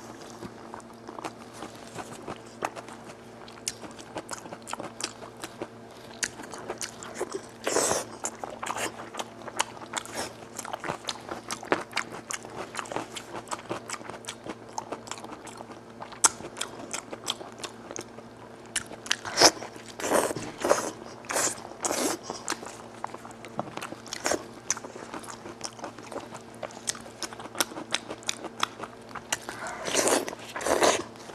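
Close-miked chewing of spicy braised goat-head meat, with a steady run of wet mouth clicks and lip smacks. Louder bursts come about eight seconds in and again around twenty seconds.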